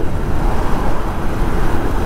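Steady wind rush and engine and road noise of a motorcycle riding at highway speed, picked up by the rider's own camera.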